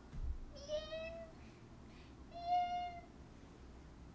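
Two short, high-pitched whines from a young woman, squeamish at the thought of a painful ear piercing: the first rises slightly, the second is steadier and louder. A low thump comes at the very start.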